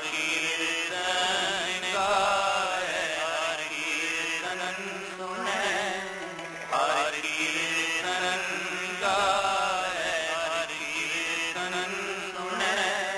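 Sikh shabad kirtan: a male lead voice sings long, wavering, ornamented phrases over a steady harmonium drone, with tabla accompaniment.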